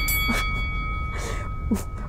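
A bell-like ding strikes at the start and rings on with several steady tones that fade over about a second, the lowest lasting longest. A few short knocks follow, and a brief laugh comes near the end.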